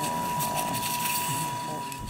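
Operating-room ambience: a steady, single-pitched electronic tone from surgical equipment over low, indistinct voices.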